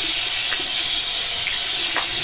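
A steady hiss that holds level throughout, with no strokes or changes.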